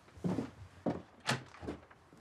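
About four short, soft knocks spread through two seconds: footsteps crossing a room and a door being handled.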